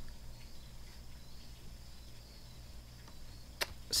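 Quiet room tone from a voice microphone: a steady low electrical hum with faint hiss, and a brief click near the end.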